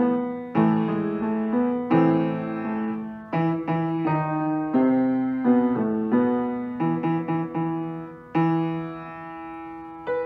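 Solo upright piano played at a slow pace: chords and notes struck one after another and left to ring and fade, with a longer held chord near the end.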